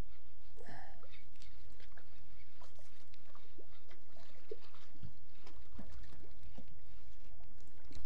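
A fish is reeled in on a spinning rod, heard as faint scattered ticks and small splashes over a steady low rumble.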